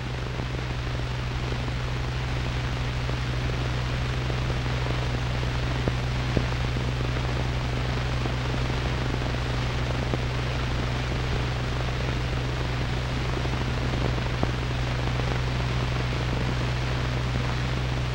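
Steady hiss with a low, constant hum underneath, the background noise of an old film soundtrack, with a few faint clicks.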